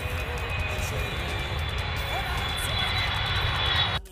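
A title-sequence sound effect: a steady rushing roar with a thin high whine, growing louder and then cutting off abruptly at the end.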